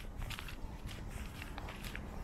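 Faint footsteps of a person walking on a snowy path, several steps at an even pace.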